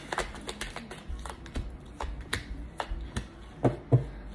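Tarot cards being shuffled and handled: a quick, irregular run of card clicks and flicks, then two louder thumps near the end as cards are laid down on the table.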